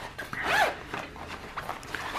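Black Oxford nylon zippered pouch being handled and opened: fabric rustling with a zipper rasp, loudest about half a second in.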